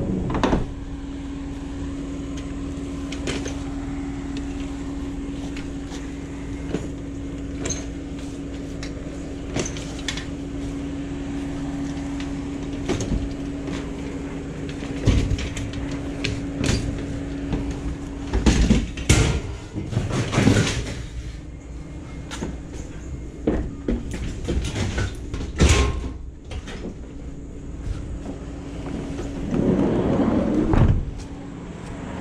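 Rusty metal wire cart knocking and clattering as it is handled and loaded into a cargo van's open sliding side door, the loudest run of knocks about halfway through and another sharp knock later, over a steady low hum.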